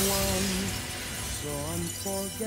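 A large plate-glass window shattering, the crash of breaking glass trailing off as a fading hiss of falling shards, with a slow song playing underneath.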